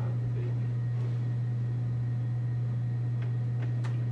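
Steady low hum of room tone, with a few faint clicks near the end.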